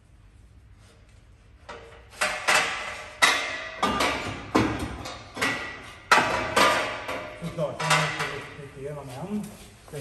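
A quick series of sharp metallic clanks and knocks, about two a second, each ringing briefly, starting about two seconds in: steel parts being handled at a car lift's red jack.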